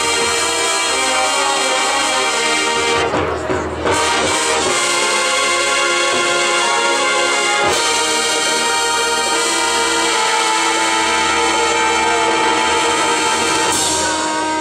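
Marching band playing, its brass holding full sustained chords. The sound dips briefly about three seconds in, and a sharp accented hit comes a little past the middle before the held chords resume.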